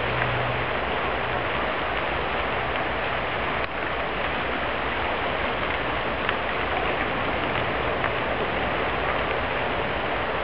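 Wildfire burning through cottonwood trees: a steady rushing noise with a few scattered sharp pops and crackles.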